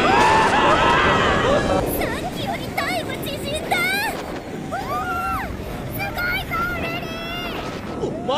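VelociCoaster steel roller coaster train running fast along the track, a steady rumble with wind noise, loudest in the first two seconds. Many short, high, rising-and-falling voice cries sound over it.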